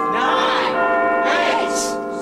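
Church bells ringing in the New Year, their many tones held throughout, with a party crowd's voices shouting and cheering over them.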